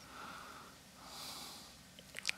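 A man's faint breathing at a studio microphone between sentences: two soft breaths, the second hissier than the first.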